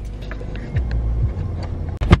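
Low rumble inside a car's cabin, swelling in the second half, with a few faint ticks and knocks as the camera is handled.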